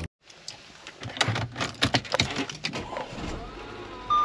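A run of short clicks and knocks from things being handled inside a car cabin, starting about a second in.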